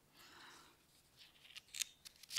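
Faint handling noises: a soft rustle early on, then a few short clicks and rustles in the second half, the sharpest near the end.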